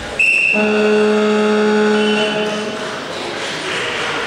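A referee's whistle gives a short, high blast just after the start, signalling the bout to begin. It is followed by a steady, lower pitched held tone for about two seconds.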